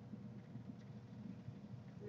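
Faint room tone: a low, steady background hum with no clicks or other distinct sounds.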